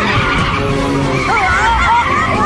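Dramatic cartoon-soundtrack effects: a run of short, high squealing tones that rise and fall, like tyre screeches, over a low rumble.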